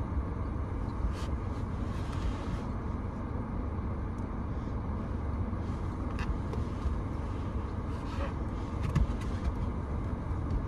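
Steady low rumble inside a car cabin, with a few faint clicks and rustles scattered through it.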